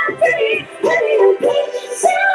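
Pop song: a woman singing the melody over a backing track.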